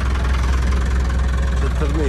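Mercedes 307D van's diesel engine idling steadily with a constant low rumble.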